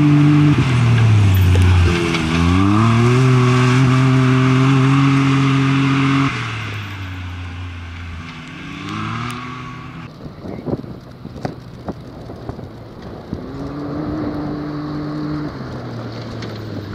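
Can-Am Maverick X3 side-by-side's turbocharged three-cylinder engine driven hard on a dirt stage. The revs dip about a second in, climb back and hold loud, then the sound falls away as the car moves off. After a cut the engine is heard more distantly with a few sharp clicks, and its revs rise again near the end as it approaches.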